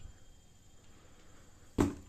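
Faint room tone, then near the end a single sharp thump as a rubber dead-blow mallet is set down on a cardboard box.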